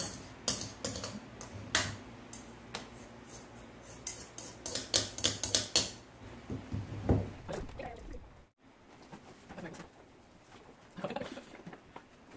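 A table knife clinking and scraping against a mixing bowl while stirring scone dough: a quick, irregular run of clicks for about six seconds, then only soft handling sounds.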